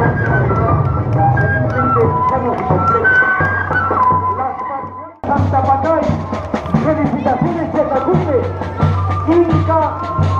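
Parade band music: a high stepping melody over a steady drum beat. About five seconds in the sound fades and then cuts abruptly into another stretch of the music, with voices over it.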